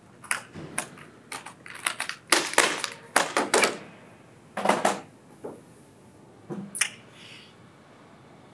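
Quick run of sharp plastic clicks and clacks, then two heavier knocks, as a laptop with a broken screen hinge is handled and put away.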